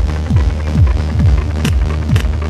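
Techno played in a DJ set. A deep kick drum drops in pitch on each beat, a little over two beats a second, over a steady bass drone. Short hissing hi-hat-like bursts come in near the end.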